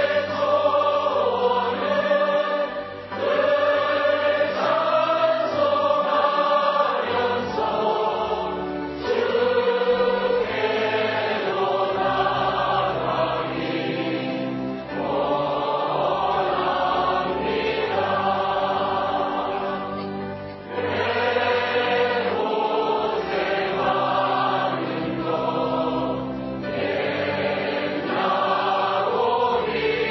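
A choir singing a hymn in long, sustained phrases over low bass notes.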